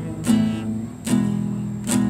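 Nylon-string classical guitar strummed in a simple beginner's accompaniment on two chords. There are three strums about a second apart, each left ringing.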